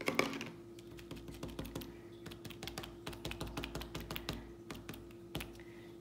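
A bundle of cotton swabs dabbing paint onto paper, making quick irregular light taps, with a louder knock just after the start. A faint steady hum runs underneath.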